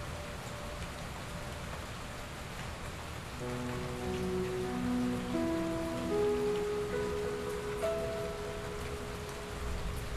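Steady rain falling on a surface. About three and a half seconds in, soft notes on a Kawai NV10 piano come in one after another and ring on under the held sustain pedal, climbing higher near the end.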